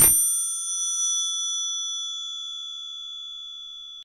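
A bell chime ringing out with several clear, high tones, fading slowly over the four seconds.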